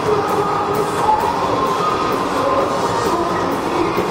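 A live hard rock band playing at full volume, recorded from the audience so it sounds dense and distorted. Held melody notes sit over the guitars and drums, with cymbal strokes about twice a second.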